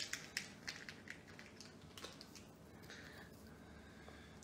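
Faint, scattered small clicks and taps of hands handling beading supplies on a tabletop, most of them in the first two seconds.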